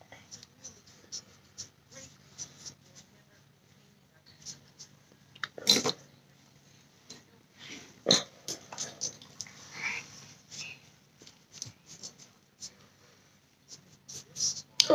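Faint, scattered brushing and dabbing of a makeup brush working foundation into the skin of the face, with two louder knocks about six and eight seconds in.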